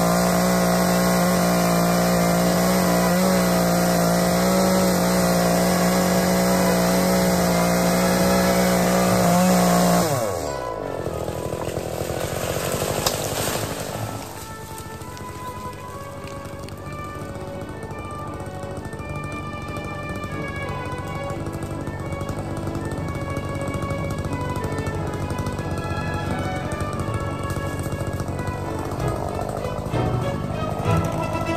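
Chainsaw cutting steadily through a palm trunk, then winding down sharply about ten seconds in as the cut finishes. The cut top crashes through foliage for a few seconds and hangs up in the branches, then background music plays.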